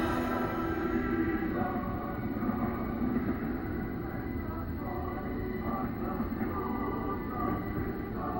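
Film soundtrack played back from videotape through a television's speaker: slow, sustained music with indistinct voices under it.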